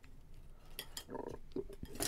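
Faint scattered clicks and clinks of a Wi-Fi adapter being handled and moved on a desk.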